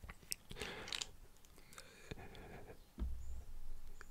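Faint scraping and small clicks of a sub-ohm vape tank's threaded metal sections being unscrewed by hand, with a soft low bump about three seconds in.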